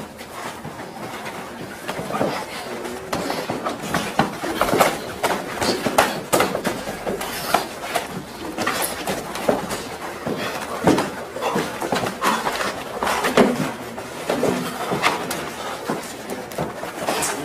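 Men wrestling and grappling on a carpeted floor: irregular thuds, scuffling and body impacts throughout, with short bursts of voice.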